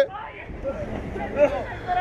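Faint, distant voices of several people talking over a low outdoor background hum.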